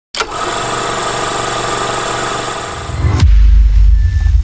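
Intro sting sound effect: a bright, dense sustained tone for about three seconds that sweeps down and gives way to a loud, deep bass rumble.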